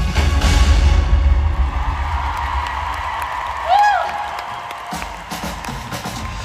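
Loud live pop music with a heavy bass beat cuts off about two seconds in, leaving a cheering crowd. A single short high shout stands out near the four-second mark.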